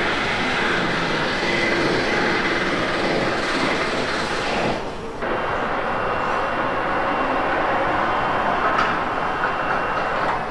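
Steady, loud din of a car assembly hall: machinery and overhead-conveyor noise. It dips briefly about halfway through, and after that a faint high whine runs under it.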